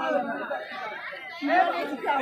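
Several people talking at once in a murmur of chatter, with no single clear voice.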